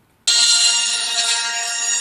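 Boba Fett electronic talking helmet toy playing music from its built-in speaker, cutting in suddenly about a quarter second in. The sound is thin, with little bass.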